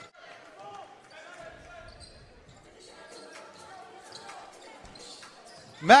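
Faint basketball game sound in an indoor arena: murmuring crowd voices with a basketball bouncing on the court.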